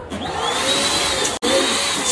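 Electric balloon pump running, blowing air into red balloons on its nozzles: a loud, steady rush of air with a faint motor whine rising and falling in it. It breaks off for an instant about one and a half seconds in.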